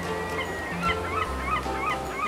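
Seagull calls: a quick series of short yelping cries, several a second, over background music.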